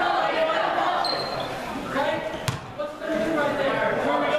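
Crowd voices and chatter in a gymnasium, with one basketball bounce on the hardwood floor about halfway through. A brief high squeak comes about a second in.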